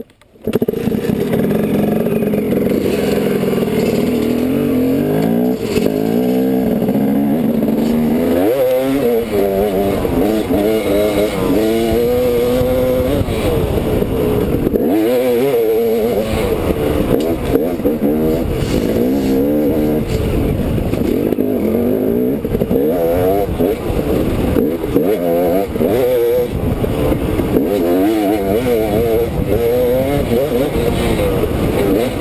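Dirt bike engine heard close up from the rider's helmet, revving up and falling back again and again as the bike is ridden along a rough trail. It comes in suddenly about half a second in and stays loud throughout.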